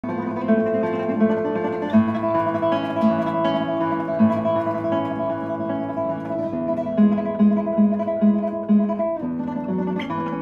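Classical guitar played fingerstyle: a slow piece of ringing, overlapping plucked notes. In the second half a low note repeats evenly about twice a second.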